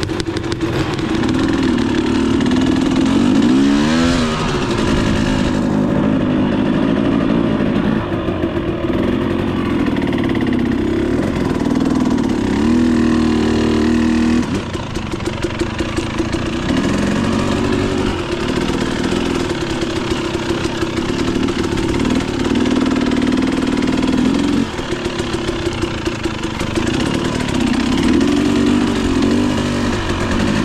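300cc two-stroke dirt bike engine running under way, its pitch rising and falling over and over as the throttle is opened and closed.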